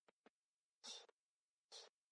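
Near silence, broken by two faint short sounds about a second apart.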